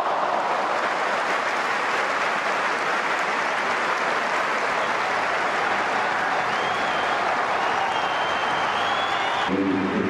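Football stadium crowd cheering and applauding, a steady dense wash of noise, with a few thin high whistle tones in the second half. The sound changes abruptly just before the end.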